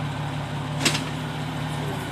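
Jeep Wrangler Rubicon's engine idling steadily, with one sharp click about a second in.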